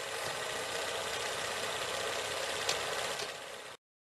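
Sound effect of an old film projector running: a steady mechanical rattle with hiss that cuts off abruptly near the end.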